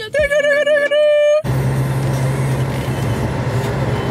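A brief wavering note, then about one and a half seconds in an abrupt cut to the steady road noise of a car driving, a constant low hum under the tyre roar.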